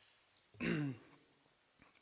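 A man clearing his throat once, a short, loud burst about half a second in.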